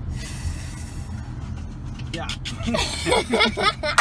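Car cabin noise while driving: a steady low road-and-engine rumble, with a brief hiss in about the first second.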